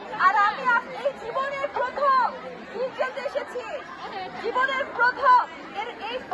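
Speech: a woman addressing a crowd through a microphone, with crowd chatter around her.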